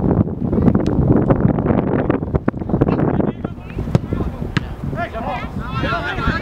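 Wind buffeting the microphone on an open field, a heavy low rumble that eases about halfway through, with a few sharp knocks. Distant players' shouts and calls come in near the end.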